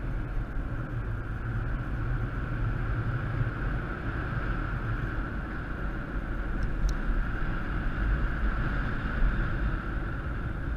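Steady wind rushing over the microphone of a paraglider pilot's worn camera in flight, with a deep rumble and a constant hiss.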